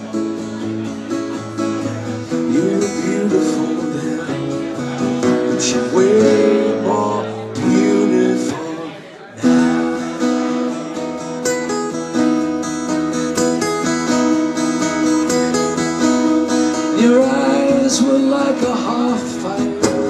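Two acoustic guitars strummed together in a song, with a man's voice singing in places. The playing thins out and drops about eight seconds in, then comes back with a hard strum a little past the midpoint.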